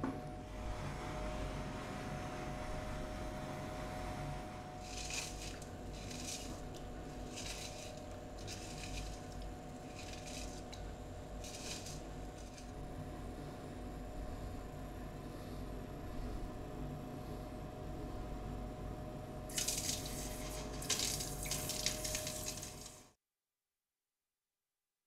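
Water sloshing and splashing in a steel bowl in short bursts, a run of them in the first half and another near the end, over a steady rush with a low hum. The sound cuts off abruptly just before the end.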